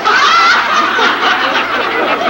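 Audience laughter in a TV comedy sketch, loud and continuous.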